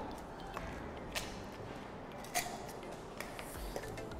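Low room noise with a few faint clicks and taps, the handling of small objects on a worktable; one tap just before the middle rings briefly like a light clink.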